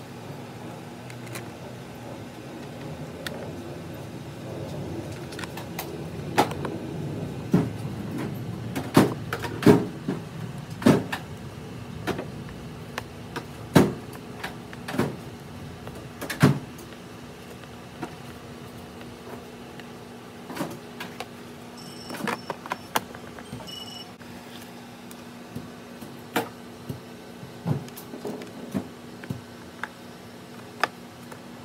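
Irregular sharp clicks and knocks of a hand screwdriver and plastic parts as a speaker is screwed into a motorcycle's plastic saddlebag lid, busiest in the first half, with a steady low hum underneath.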